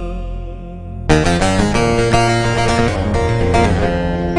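Instrumental passage of a Turkish folk song (türkü). Held notes fade for about a second, then a fast plucked-string melody starts sharply over bass and backing.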